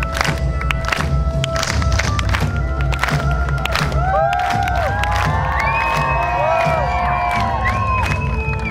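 Live rock band playing loud and steady, with a heavy bass-and-drum beat and a crowd cheering over it. About halfway through, a melodic lead line comes in above the beat, gliding between held notes.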